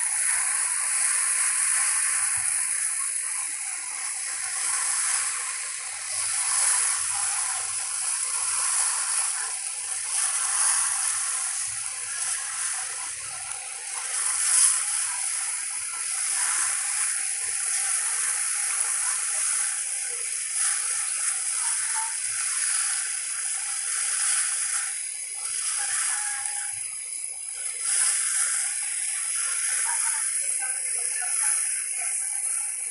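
Steady rush and splash of harbour water along the side of a moving ferry, swelling and easing a little, with one brief louder splash about halfway through.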